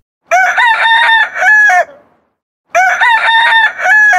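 A rooster crowing, played twice as two identical copies of about a second and a half each, with a short gap between them. It is an added sound effect.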